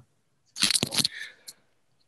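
Wired earphones being handled and put on close to a computer microphone: a short burst of rustling and clicking about half a second in, then one more click.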